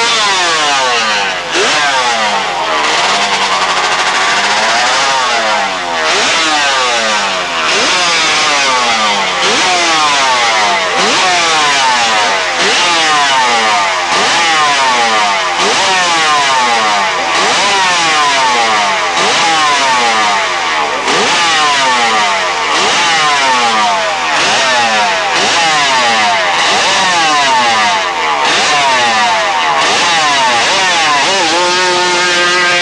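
Drag-racing sprint motorcycle engine revved over and over while standing: each time the revs jump up and then fall away, about every one and a half to two seconds.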